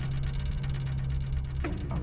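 A steady low hum with a faint buzz over it, and a brief faint sound near the end.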